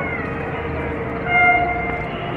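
Diesel-electric locomotive's horn giving a short toot about one and a half seconds in, over the steady running sound of the approaching train.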